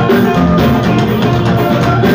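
Loud live fuji band music with a steady drum beat.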